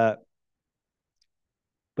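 The tail of a man's hesitant 'uh', then near silence with one faint tick about a second in.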